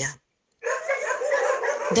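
A dog whining steadily for about a second and a half, after a brief moment of silence.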